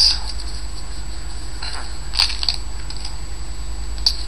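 Foil trading-card pack being torn open and its wrapper crinkled, a few sharp crinkles with the loudest about two seconds in, over a steady low electrical hum.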